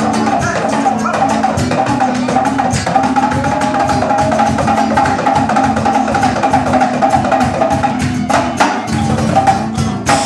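Live acoustic band playing an upbeat song: acoustic guitar, djembe hand drum with fast hits and a saxophone carrying the melody. The music stops at the very end.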